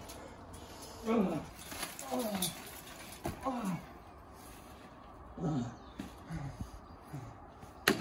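A man groaning in pain: about six short groans, each falling in pitch, a second or so apart. A sharp thump comes near the end.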